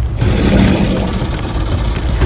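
A loud, steady low rumble with a rushing noise above it.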